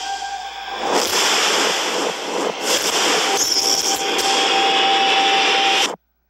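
Film trailer sound design and score: a dense, loud wash of noise with a held steady note and a few sharp hits, cutting off suddenly just before the end.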